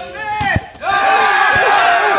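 A crowd of soldiers yelling and cheering together at a pugil-stick fight, the shouting swelling loud about a second in. A few dull thumps come just before the shouting swells.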